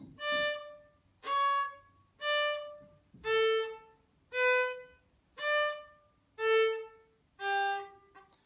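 Fiddle playing eight separate bowed notes of a short phrase, about one a second, each stopped cleanly with a brief silence before the next. This is the stop-and-change practice technique: the bow is halted before each finger or string change so that no note carries over into the next.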